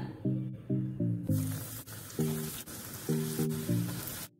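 Background music with a rhythm of short notes; about a second in, breaded egg fingers begin sizzling as they deep-fry in hot oil.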